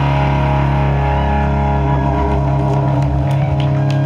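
Live country-rock band holding its final chord: electric and acoustic guitars and bass guitar let one chord ring out after the last hit. The lowest bass notes drop out about three seconds in, and the rest of the chord carries on to the end.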